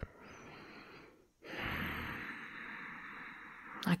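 A woman breathing slowly through the nose. A faint in-breath lasts about a second, then after a brief pause comes a louder out-breath of about two and a half seconds, a soft purr or sigh.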